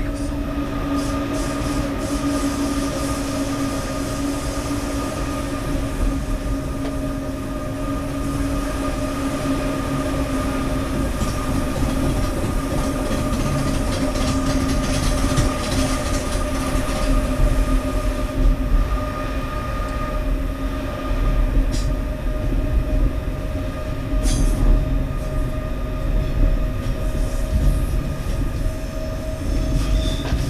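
Electric train running steadily, heard from the cab: a constant hum of a few held tones over a low rumble of the wheels. In the second half the rumble grows louder, with a few sharp clicks as the wheels cross points.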